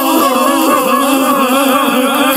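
A dense, steady jumble of several cartoon voices and music overlapping at once: the same clip's audio layered four times over.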